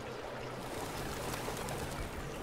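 Water rushing steadily through an opened sluice of a river lock.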